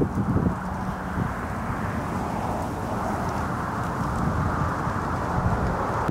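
Wind blowing across the microphone in open desert: a steady rushing rumble.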